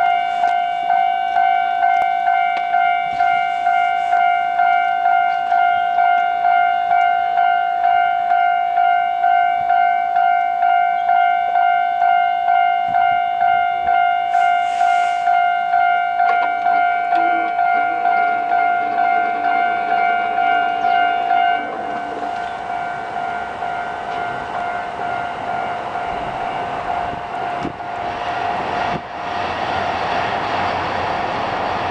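Railway level-crossing alarm ringing a steady electronic tone, about two strikes a second. About twenty seconds in the alarm drops back and a broad, rising rumble builds, typical of a train approaching.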